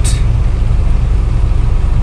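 Truck engine running steadily under way, a deep low rumble with road noise, heard from inside the cab.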